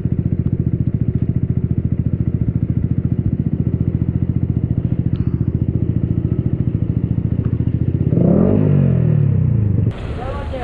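Yamaha YZF-R125's single-cylinder four-stroke engine running at low revs with a fast, even pulse as the bike rolls slowly. Near the end it gets louder and its pitch rises and falls once.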